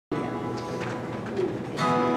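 Acoustic guitar playing the opening of a song: quieter ringing notes, then a louder strummed chord near the end.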